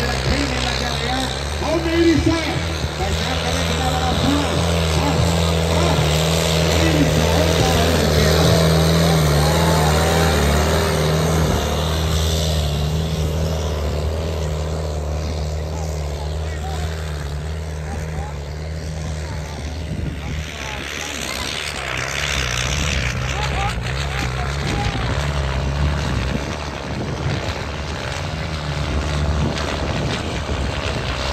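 Tractor engine running hard at a steady pitch under heavy load, dragging a sandbag-weighted disc harrow through ploughed soil; somewhat quieter from about the middle on.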